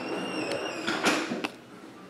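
A faint, slowly rising creak, then a few light clicks and rustles of trading cards being handled and set down.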